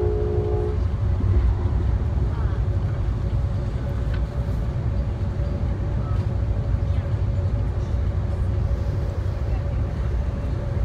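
Steady low rumble of a passenger train car running at speed on the rails, heard from inside the car. Near the start the train's multi-note horn chord is still sounding, and it cuts off within the first second.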